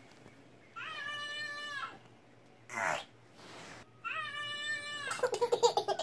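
Two high meow-like calls about three seconds apart, each held for about a second with a quick rise at the start. A toddler's rapid giggling follows near the end.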